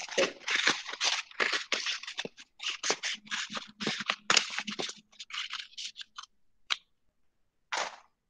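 Scissors cutting a cup out of a molded-pulp cardboard egg carton: a quick, irregular run of snips and rustles for about six seconds, then two single snips near the end.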